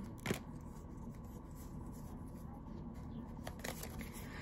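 Pokémon trading cards being handled and flipped through by hand, quiet card-on-card rustling with one sharp click just after the start and a few light ticks near the end.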